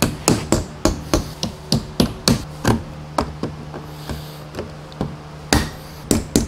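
A metal hand tool knocking on the metal clips and plywood lid of a shipping crate, working them loose to open it. It is a quick run of sharp knocks, about three a second, that thins out past the middle and picks up again near the end.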